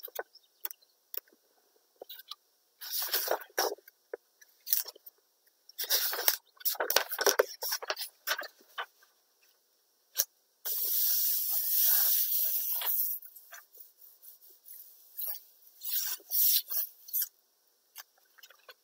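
Plastic wrap crinkling in irregular bursts and copy paper rustling as the paper is laid over the inked wrap and pressed down, with one steady swish lasting about two and a half seconds in the middle.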